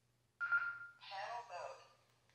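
Baofeng UV-5R handheld radio beeping from its small speaker: one steady beep about half a second in, then about a second of warbling electronic sound.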